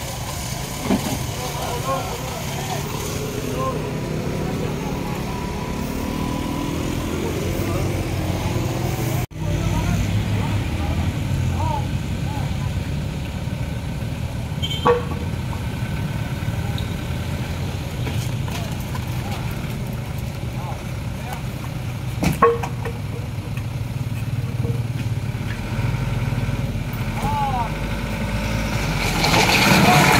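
A motor vehicle engine running steadily with a low rumble, under indistinct bystanders' voices. Two sharp knocks stand out, one about halfway through and one a few seconds later.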